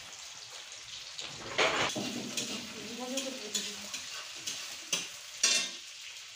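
Food frying in hot oil in a black iron kadai, sizzling steadily, with a metal spatula scraping and knocking against the pan several times.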